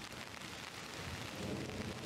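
Heavy downpour: a steady hiss of rain falling. A low rumble swells up in the second half.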